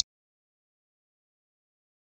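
Near silence: a single brief click at the very start, then nothing at all.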